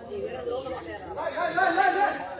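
Voices calling and chattering, with a loud, high-pitched shout just before the end.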